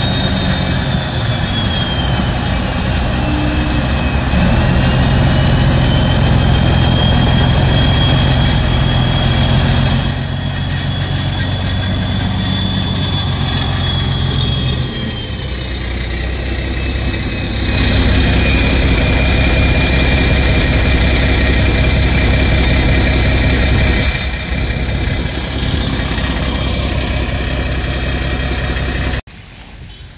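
A heavy dump truck's diesel engine runs at low revs close by as it crawls past in slow traffic, along with other vehicle engines. A thin high whine slowly falls and rises over it. The sound drops off suddenly near the end.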